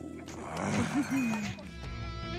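A person laughing briefly over soft background music, with louder music starting near the end.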